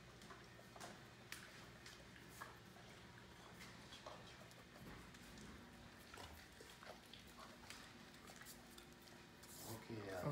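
Near silence with faint, irregular clicks from a Great Dane eating kibble slowly out of a stainless steel bowl, under a faint steady hum that stops about halfway through.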